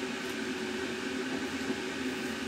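A steady mechanical hum from an appliance running in a small room, with faint rustling of small plastic bags being handled.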